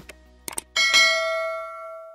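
Mouse-click sound effects, one at the start and two more about half a second in, followed by a single bright bell ding that fades over about a second: the click-and-bell sound of a subscribe-button animation.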